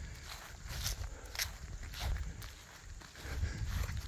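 Footsteps on the ground with light rustling, a few irregular soft ticks over a low rumble.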